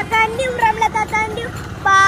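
A child talking loudly in a high voice, in short drawn-out stretches.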